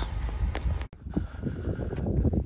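Wind rumbling on the microphone, with a sudden brief dropout about a second in.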